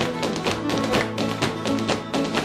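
A dancer's shoes tapping quickly on a wooden parquet floor, about five taps a second, in time with live guitar music.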